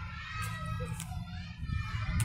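Children's voices and chatter, not close to the microphone, over a steady low hum, with one light tap about halfway through.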